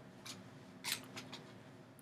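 Faint handling noises as fabric pieces are moved about: a few soft clicks and rustles, the loudest about a second in.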